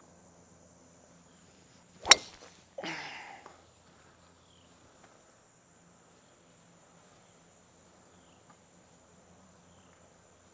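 A golf club strikes the ball once, a sharp crack about two seconds in, followed by a short rush of noise. A steady high insect trill runs underneath.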